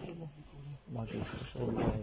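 Speech only: quiet talking, with a couple of drawn-out vocal sounds near the start.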